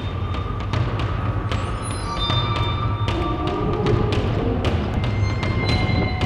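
Background music with a steady low bass line and regular percussion hits.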